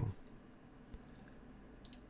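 Two faint computer mouse clicks about a second apart, over quiet room tone.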